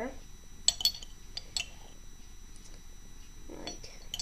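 A few light metallic clicks and clinks, a pair close together about a second in and two more shortly after, as an RC car motor is handled and fitted against its metal motor mount.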